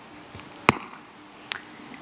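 Two short, sharp clicks a little under a second apart, over a faint steady hum.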